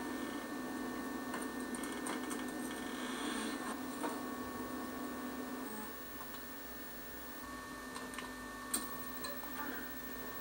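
Steady electrical hum and hiss of an old analog camcorder recording, with a few faint clicks and one sharper click near the end.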